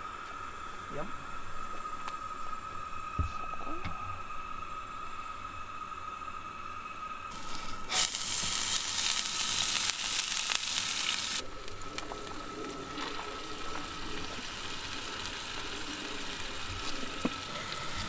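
Butter sizzling in a hot nonstick frying pan on a gas camp stove. The sizzle is loud and bright for about four seconds in the middle, starting and stopping abruptly, over a quieter steady hiss and a faint high steady tone.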